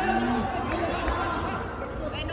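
Several people talking and calling out over one another in a large hall, the echoing shouts of spectators and corner-men at a boxing bout.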